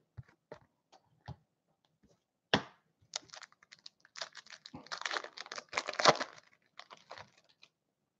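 Foil trading-card pack being torn open and crinkled by hand, a dense crackly rustle from about three seconds in until near the end. It comes after a few light clicks of cards being handled on the table.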